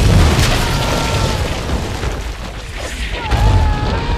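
Film soundtrack explosion: a sudden, very loud boom with a deep rumble, followed by sustained blast noise, and a second heavy boom about three seconds in.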